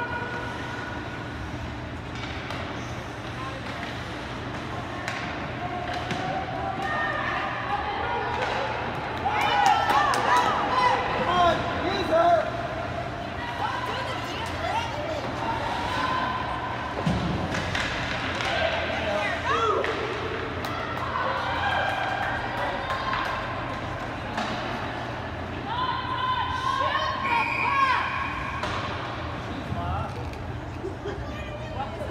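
Indistinct shouting and calling voices at an ice hockey game, with scattered knocks and thuds of sticks and puck on the ice and boards. The voices are busiest and the knocks most frequent about a third of the way in and again near the end.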